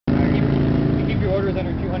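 Pontiac Firebird Trans Am's V8 idling with a steady low note, loudest in the first second, with a man's voice coming in over it partway through.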